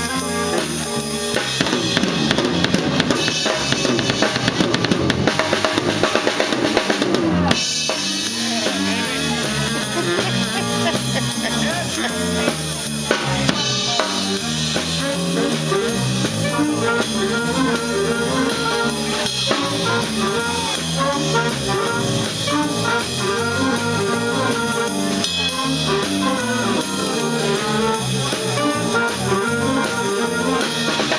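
School jazz big band playing live, with the drum kit prominent under saxophones, brass, electric guitar and keyboard. The sound changes abruptly about seven seconds in, to a busier ensemble pattern.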